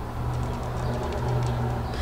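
A woman humming with her mouth closed: two low held notes, the second starting a little past a second in.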